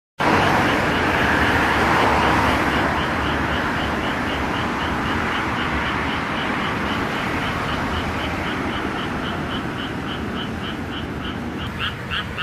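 Road traffic noise, loudest in the first few seconds and slowly fading. Under it a frog calls in a steady run of short croaks, about three a second, which stand out more clearly near the end.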